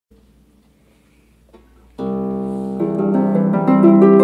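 Dusty Strings Boulevard lever harp being played: after a faint start, a chord is plucked about halfway through and rings on, and single plucked notes are added over it near the end.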